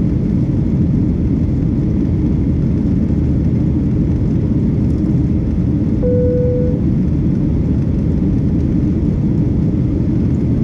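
Steady, loud rumble of a jet airliner's cabin in cruise flight. A short single tone sounds about six seconds in.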